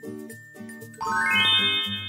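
Background music, with a chime sound effect about a second in: a quick rising run of high notes that rings on.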